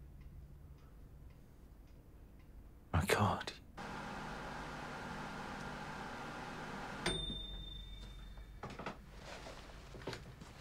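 Microwave oven heating a bowl of soup. A clunk about three seconds in, then a steady hum for about three seconds, which ends with a click and a long high beep; another clunk follows near the end.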